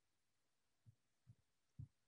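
Near silence: room tone with three faint, short low thumps spaced about half a second apart, starting about a second in.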